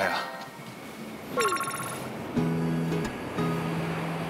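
Edited sound effect and background music: a brief, rapidly repeating bell-like chime about a second and a half in, then music with steady held low notes.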